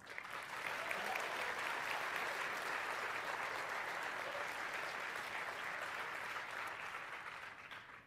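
Audience applauding, a steady clatter of many hands that swells within the first second and tapers off near the end.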